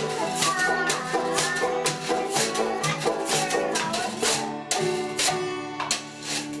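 A live band playing a song: strummed guitars holding chords over a steady, even beat.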